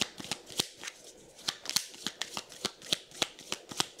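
A deck of divination cards being shuffled by hand: a quick, irregular run of sharp card clicks and snaps.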